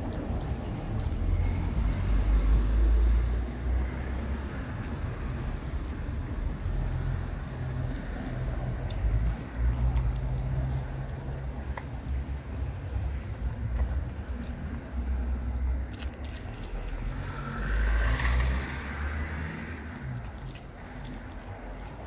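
Street traffic with a constant low rumble, and one car passing, swelling and fading, late on. Faint clicks of a cat chewing wet food come through now and then.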